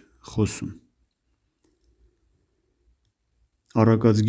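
A man's voice reading aloud in Armenian: one short word, then a pause of about three seconds with almost nothing to hear, then the reading resumes near the end.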